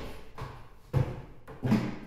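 Footsteps from an ambisonics foley recording, a series of thudding steps roughly every half second, played back through an added reverb that leaves a short tail after each step. The loudest steps fall about a second in and near the end.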